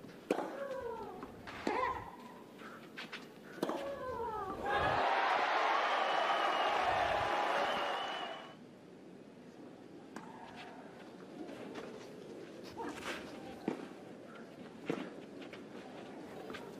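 Tennis rally: the ball cracks off racquets a few times, each hit with a player's grunt, then the crowd cheers and applauds for about four seconds once the point is won. It turns quieter, with a few more sharp ball hits near the end.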